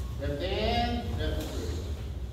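A voice calls out one long, drawn-out word lasting about a second, in the cadence of a count called during group stretching. A steady low hum runs underneath.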